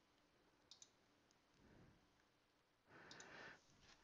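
Near silence, with two faint computer-mouse clicks in quick succession just under a second in and a faint soft noise near the end.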